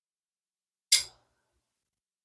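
A single short, sharp click about a second in: the reel's red side plate being set down on the work mat.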